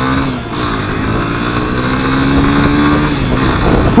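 Yamaha Fazer 250 single-cylinder engine pulling hard under open throttle while riding, its note climbing steadily for a couple of seconds and then dropping away near the end as the throttle eases or the rider shifts.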